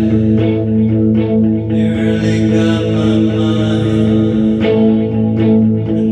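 Electric guitar played live through an amplifier, ringing chords held and changed every second or two.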